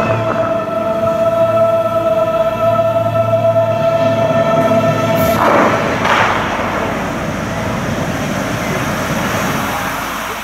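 Show music holding a sustained chord over a fountain show, cut off about five seconds in by two sudden bursts of flame from fire jets, about a second apart. After that comes a steady rushing noise of water jets and spray.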